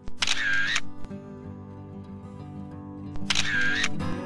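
Background music with two camera-shutter sound effects, one just after the start and one about three seconds later, each a brief burst louder than the music.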